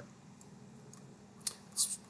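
Low room tone broken by a single sharp computer-mouse click about one and a half seconds in, then a short high hiss just before the end.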